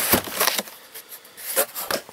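A cardboard shipping box being handled and moved on a wooden tabletop: rubbing and scraping of cardboard, with a few light knocks at the start and near the end.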